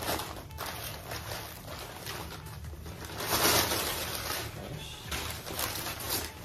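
Plastic packaging and kraft paper rustling and crinkling as a parcel is unwrapped, loudest a little past three seconds in.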